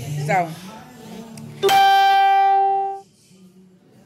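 A loud, steady pitched tone starts suddenly about a second and a half in, holds one unchanging pitch for just over a second, then cuts off abruptly, leaving near silence. Before it, faint background music.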